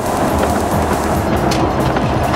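Steady drone of a motorhome under way at highway speed, engine and road noise heard inside the cab, with background music over it.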